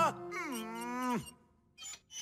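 A cartoon strongman's long, strained vocal groan, held and wavering, that falls sharply in pitch as it ends just past a second in. It is followed by a short high squeak near the end.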